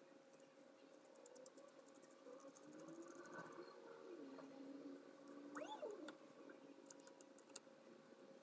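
Near silence: faint room tone with a few faint, short high squeaks and ticks.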